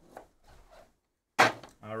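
A single sharp knock as a cardboard box of trading cards is set down on the table, with light card-handling rustles before it.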